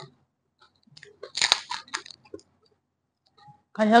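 Someone biting into and chewing a crisp, hollow pani puri shell. There is one loud crunch about a second and a half in, with a few small crunches and mouth clicks around it.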